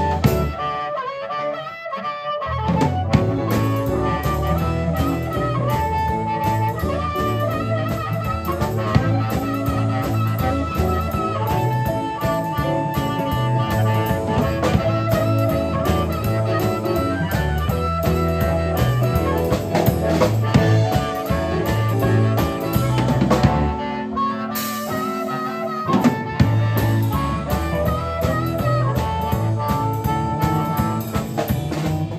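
Live blues band playing an instrumental break: a harmonica played into the vocal mic leads with long held notes over drum kit, electric guitar and electric bass. The bass and drums drop out briefly shortly after the start and again about 24 seconds in.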